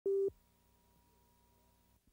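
A single short sine-tone beep from a videotape countdown leader, cutting off after about a quarter second, followed by faint steady hum.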